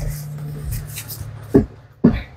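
A small cardboard shipping box being handled and set down, with rubbing and shuffling, then a single thump about one and a half seconds in as it is put down.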